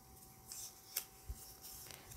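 Faint rustling and a few soft clicks of a small folded paper slip being picked up and unfolded by hand.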